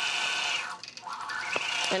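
Longarm quilting machine stitching, its motor whining steadily. About two-thirds of a second in, the whine drops in pitch and level as the machine slows, then rises back to speed.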